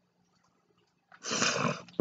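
Near silence, then about a second in a woman's loud breath close to the microphone: a short rush of noise lasting about half a second, just before she speaks.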